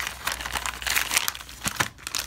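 Clear plastic packaging bag crinkling and rustling as it is handled, with irregular sharp crackles.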